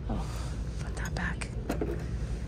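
Low, whispery speech with a few light clicks and knocks between about one and two seconds in, from a small ceramic beer stein being handled and set back down on a store shelf.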